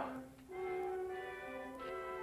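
Orchestral background music, held notes that build up as new notes enter one after another, after a brief lull about half a second in.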